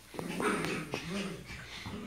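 Small dogs at play giving a few short whines, each rising and falling in pitch, with a couple of light clicks in the first second.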